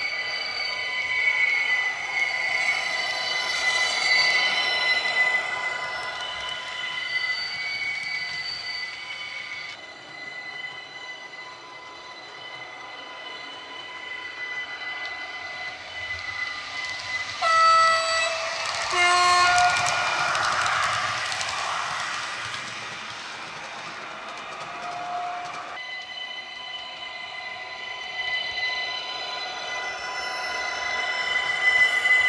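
Digital sound from an ESU LokSound 5 decoder in a model class 4746 electric multiple unit, played through a passive radiator speaker. Steady, high electric-motor whine with gliding tones runs first. Past halfway come two horn blasts, then a rush of hissing noise for several seconds, and the motor whine comes back near the end.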